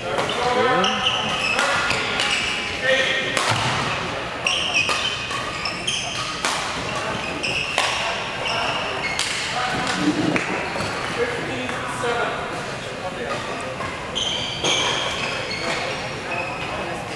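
Badminton rally: rackets striking the shuttlecock about every second and a half, with shoes squeaking on the court floor between shots.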